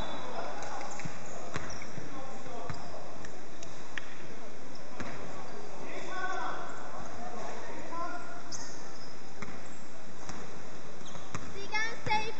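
A basketball bouncing on a hardwood gym floor as a player dribbles up the court. The bounces come irregularly, with indistinct voices in the gym.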